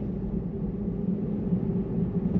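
Steady low road and tyre rumble heard inside the cabin of a moving Tesla.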